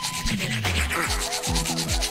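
Toothbrush scrubbing teeth in rapid back-and-forth strokes, a cartoon brushing sound effect.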